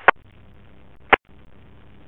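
Radio scanner hiss between transmissions, broken by two sharp squelch clicks about a second apart.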